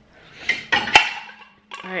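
Dishes being handled and stacked while being put away: a short clatter, then a sharp clink about a second in and another just before the end.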